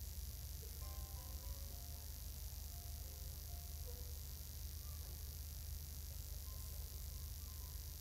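Quiet room tone: a steady low electrical hum under a hiss, with a few faint short tones between about one and four seconds in.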